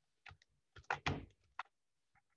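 A few short clicks and knocks at a computer desk from the mouse and keyboard, with one heavier thunk about a second in.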